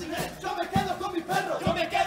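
A carnival murga's male chorus singing together in unison, over a few bass drum beats, two of them close together near the end.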